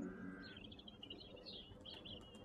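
Faint, high bird chirps and twitters in a lull between a cappella vocal phrases.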